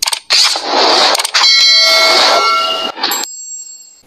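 Sound effects of a subscribe-button intro animation: a click and a rushing whoosh, then a bright chime ringing with several tones for about a second and a half, a short click about three seconds in, and a faint high ring after it.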